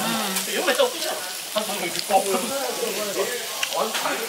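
Thin-sliced beef brisket sizzling steadily on a tabletop grill plate, with voices in the background.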